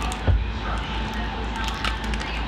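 A small plastic candy wrapper rustling and crinkling as a piece of bubblegum is unwrapped and taken out with the mouth, with a single soft knock about a third of a second in.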